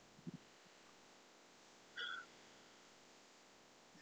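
Near silence: room tone, with one faint, short, high-pitched sound about two seconds in.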